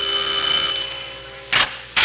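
Doorbell sound effect ringing: a sustained ring that fades away over about a second and a half, followed by a brief sharp sound near the end.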